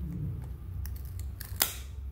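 Cardboard trading cards being slid and pulled apart from a stuck-together stack. There are a few light clicks and one sharper snap about three-quarters of the way through, over a steady low hum.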